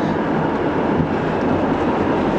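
Steady rumble of tyres and road noise heard from inside a moving car's cabin.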